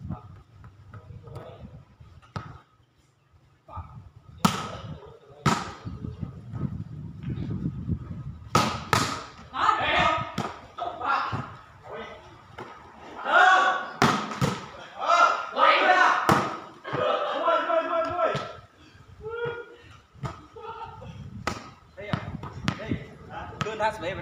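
A ball being kicked during play: a series of sharp thumps spaced irregularly through the stretch, with players' loud shouts and calls in between.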